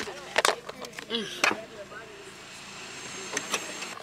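A few sharp clicks and knocks from a plastic food container being handled, its snap-on lid pressed down, in the first second and a half, then a low steady car-cabin hum.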